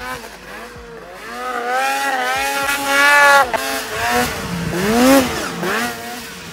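Polaris snowmobile engine revving hard under load. The pitch climbs for about two seconds, drops suddenly, then rises and falls once more near the end.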